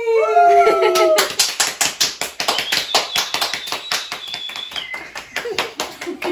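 Voices holding a last drawn-out sung note that falls in pitch and breaks off about a second in, then quick hand clapping of applause, about five or six claps a second, through the rest.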